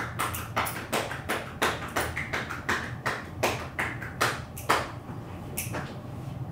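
Ear pick scraping inside a person's ear canal, heard close up: a run of short scratchy strokes, about two to three a second, thinning out near the end.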